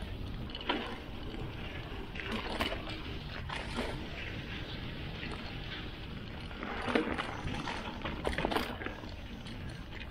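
Mountain bike riding down a rough, rutted dirt singletrack: steady tyre and wind rumble on the camera microphone, with several sharp knocks and rattles from the bike as it hits bumps.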